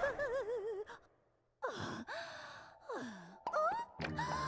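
A cartoon character's wordless vocal sounds: a wavering, trembling tone, a brief silence, then a sigh and a few short gliding gasp-like noises, some falling in pitch and some rising.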